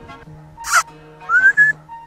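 A person whistling to call a cow: a short shrill whistle, then a second whistle rising in pitch. Steady background music plays under it.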